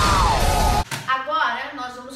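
Explosion sound effect: a loud blast of noise with a falling tone running through it, cutting off suddenly just under a second in.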